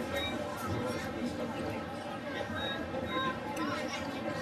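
Indistinct chatter of spectators in a stadium crowd, a steady mix of overlapping voices with no clear words.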